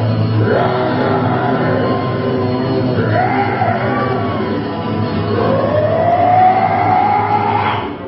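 Live acoustic band music from strummed strings, drums and a bowed upright bass, with long sliding tones that rise and fall in pitch and one long rising slide near the end.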